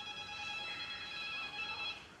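A steady, high-pitched electronic tone with several overtones, held for about two seconds and cutting off near the end.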